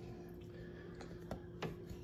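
Faint light clicks and taps as a fish fillet is pressed and turned in dry breading mix in a glass bowl, a few scattered through the second half, over a faint steady hum.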